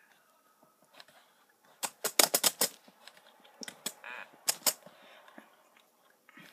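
Keys on the braille keyboard of a BrailleNote Apex notetaker being pressed, heard as two quick runs of clicks, the first about two seconds in and the second past the middle.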